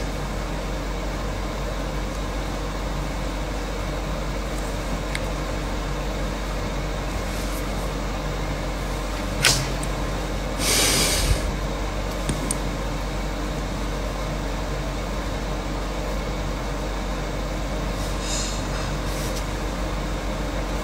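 Steady droning background noise, with a sharp click about nine and a half seconds in and a short burst of hiss about a second later.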